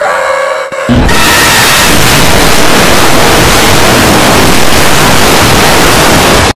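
Extremely loud, harsh static-like noise filling the whole range: a distorted blast of edited-in noise. A brief, somewhat lower sound comes in the first second before it.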